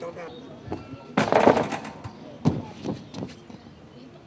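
A man's voice talking, with a loud sudden noise a little over a second in and then a few sharp knocks.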